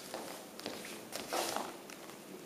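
Faint steps and scuffs of two tango dancers' shoes on a wooden floor, with a louder scuff about a second and a half in.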